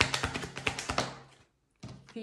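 A deck of tarot cards shuffled by hand, the cards tapping together in a quick even run of about five taps a second that fades out after about a second and a half. A single card tap follows near the end.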